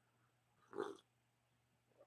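A single short slurp of hot tea from a mug, about a second in, with near silence around it.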